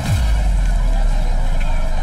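Film soundtrack: a deep bass hit falls in pitch at the start, then settles into a steady, loud low rumble with a hiss above it.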